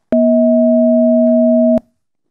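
Ring-modulated sine tone generated in the FAUST web editor: a 440 Hz sine oscillator multiplied by a 200 Hz sine, heard as two steady pure pitches at their difference and sum (about 240 Hz and 640 Hz) rather than at 440 and 200. It starts with a click and cuts off with a click near the end.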